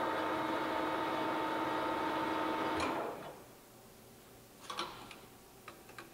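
Nardini MS1440 geared-head engine lathe running at 1800 rpm, a steady whine of several tones. About three seconds in there is a click and the spindle winds down, stopping within about half a second. A few light clicks follow near the end.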